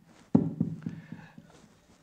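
A brief vocal sound into a wireless karaoke microphone, followed by the mixer's echo effect: a rapid train of evenly spaced repeats, several a second, fading away within about a second. It plays through small desktop computer speakers.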